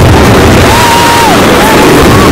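Fireworks display bursting and crackling overhead, so loud that it overloads the recording. A thin high whistle holds for about half a second near the middle and bends down at its end.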